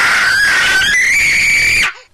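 A young child's long, loud, high-pitched tantrum scream of frustration at being refused a strawberry. It jumps higher in pitch about a second in and cuts off abruptly just before the end.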